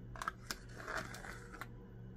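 Faint scraping and a few light clicks of a spoon against a small applesauce cup as applesauce is scooped out into a mixing bowl.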